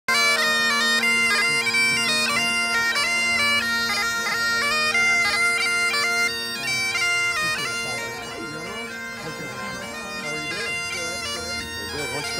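Bagpipes playing a marching tune over steady drones. About seven or eight seconds in, the melody fades and the pipes grow quieter, leaving mostly the drone.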